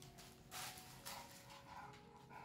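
Two English bulldogs play-fighting, making faint dog sounds, with two short noisy bursts about half a second and a second in.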